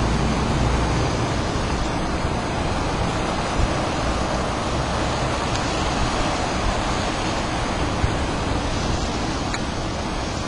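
Steady outdoor background noise: a continuous, even rushing with a low rumble and no distinct events.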